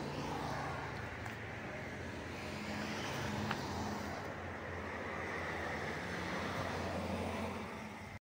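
Steady outdoor traffic noise, with a low engine hum from vehicles running or passing on the street. There is one short sharp tick about halfway through.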